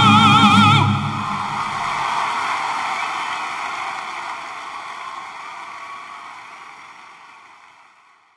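The last sung note of an operatic duet, held with a wide vibrato, stops less than a second in. Audience applause follows and fades out steadily.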